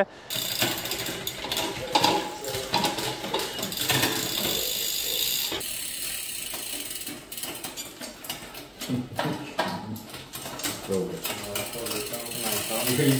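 A Shimano 105 Di2 electronic rear derailleur shifting a hand-cranked bicycle chain across the 12-speed cassette from the smallest cog to the largest: a dense run of chain clicking and ratcheting for the first six or seven seconds, thinning to scattered clicks after that.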